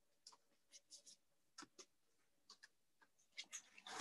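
Near silence, broken by a dozen or so faint, brief clicks and rustles of greeting-card stock being handled.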